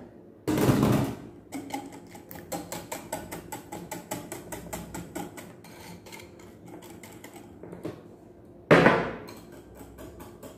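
Wire whisk beating eggs into a butter and sugar mixture in a bowl, its wires clicking against the bowl about five times a second. A louder clatter comes about half a second in and another near the end.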